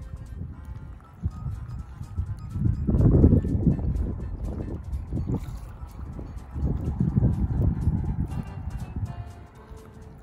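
Wind buffeting the microphone in low rumbling gusts, strongest about three seconds in and again around seven seconds.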